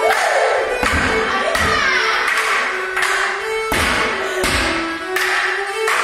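Fiddle playing a Border morris dance tune, with the dancers' sharp hand claps and stick strikes landing on the beat about once every three-quarters of a second.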